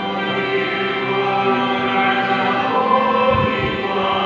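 Choir singing a hymn with organ accompaniment.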